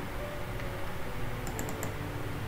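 Steady low hum, then about one and a half seconds in a short run of four quick sharp clicks: a computer mouse double-clicking to open a file.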